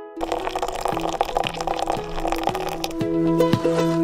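Water running from the Aquaforno 2 stove's side-tank tap into a glass cafetière, a steady splashing that fades about three seconds in. Background music of plucked strings plays over it and is the loudest sound.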